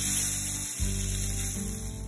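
Diced calamari sizzling in oil in a wok, a steady hiss, over background music of low held notes.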